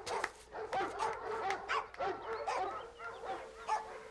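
Several dogs in kennels barking and yipping in short, overlapping yelps.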